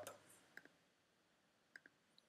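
Near silence with two faint computer mouse clicks, one about half a second in and one near the end, each a quick press-and-release double tick.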